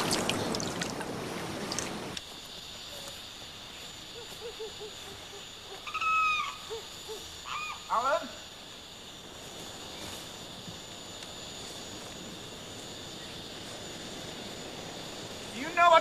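About two seconds of water noise, then a cut to night-time outdoor ambience: a steady high insect drone, with a bird calling once around the middle and twice more soon after.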